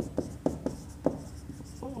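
Marker pen writing on a whiteboard: a quick series of short, sharp strokes and taps, about five in the first second, then a quieter pause.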